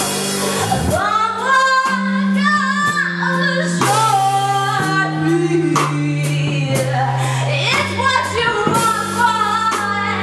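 Live band music with a woman singing lead over guitar, a sustained low bass line and regular percussive hits, with a trumpet playing as well.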